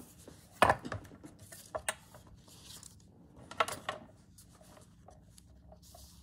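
Handling noise of a handmade journal cover being brought back and laid on a cutting mat: soft rustling with two sharp knocks, the first about half a second in and the second past halfway, and a lighter tap in between.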